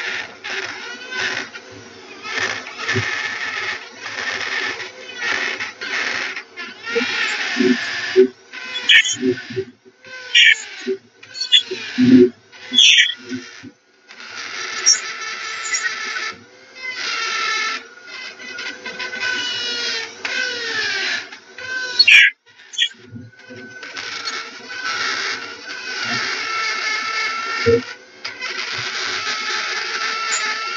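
Dremel rotary tool running with a heat-treated three-point carving burr, grinding into hard, dense yew wood in repeated passes. Its whine rises and falls as the bit bites and lifts off, with brief breaks between passes.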